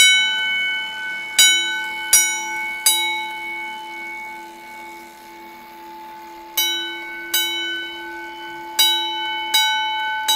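Edwards 323D-10AW 10-inch single-stroke fire alarm bell, struck one stroke at a time by a Notifier coded pull station sending its box code 2-4-3. There is one stroke at the start, then three strokes about 0.7 s apart. A pause of about four seconds follows while the ring fades, then two strokes and the first two strokes of a group of four.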